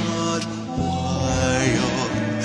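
A song playing: an instrumental stretch of held bass notes that change about every second under layered sustained chords.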